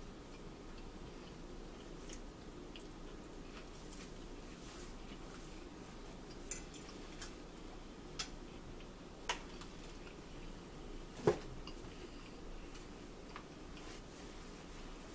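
Quiet eating sounds: a handful of light clicks of a metal fork against a plate, the loudest a few seconds before the end, over a steady low room hum.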